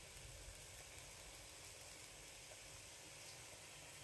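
Near silence: a faint, steady sizzle of diced chicken frying in a non-stick pan.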